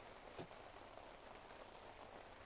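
Near silence: the faint, steady hiss of light rain, with one soft tick about half a second in.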